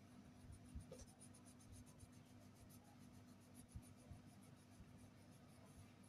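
Faint scratching of a pastel crayon rubbed on paper in quick, repeated back-and-forth strokes as an area is filled in with colour.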